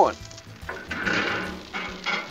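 Noodles and water sizzling on a hot flat-top griddle: a hiss that swells about halfway through and then fades.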